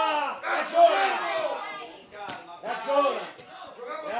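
Several voices shouting and calling out on a football pitch, in loud, rising-and-falling calls, with one sharp knock about two seconds in.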